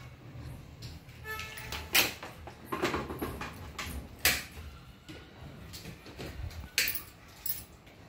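Scattered sharp clicks and knocks of handling, about five of them, spaced a second or so apart.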